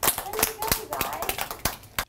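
A group of young children clapping unevenly, with children's voices calling out under the claps.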